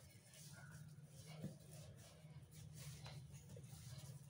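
Near silence: a faint steady low hum with a few soft, faint strokes of hands kneading dough on a floured worktop.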